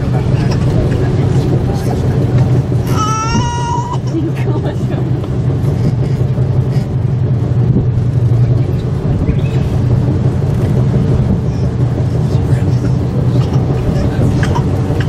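Steady low hum of an aerial ropeway cabin running down its cable, heard from inside the cabin. About three seconds in comes a brief high-pitched voice with a rising cry.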